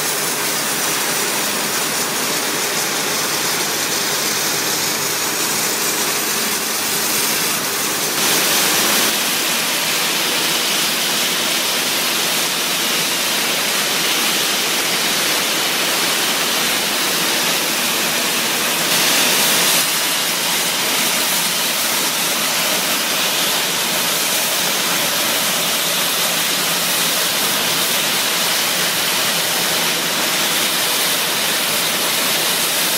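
Ultra-high-pressure water jetting through a rotary surface cleaner, blasting the concrete floor clean: a loud, steady rushing spray that swells briefly twice.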